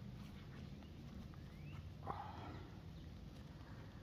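Gloved fingers teasing apart a root-bound blackberry root mass: faint rustling and crackling of soil and fine roots, with one louder crackle about two seconds in.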